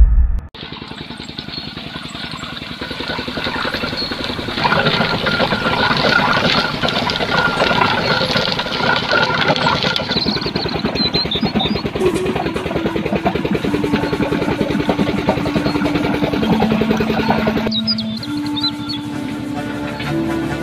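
Engine-driven sugarcane crushing mill running steadily as cane stalks go through its steel rollers, louder from about four seconds in. Music comes in over it about halfway through, and the machine noise fades out near the end.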